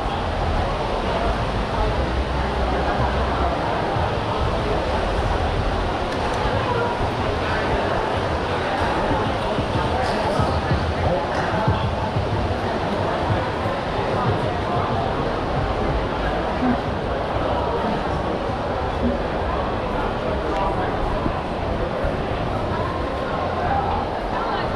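Busy shopping-mall ambience: the babble of many shoppers talking at once, with a steady low rumble underneath.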